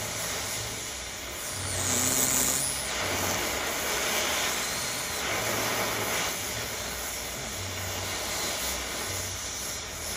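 Oxy-acetylene cutting torch flame hissing steadily against a steel plate, swelling a little about two seconds in. The flame is preheating the steel until it is molten all the way through, ready for the cut.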